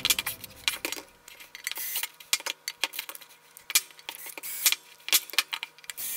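Irregular light metallic clicks and clinks as a cordless drill's hex bit and an aluminium resin vat frame are handled and knocked together, over a faint steady hum.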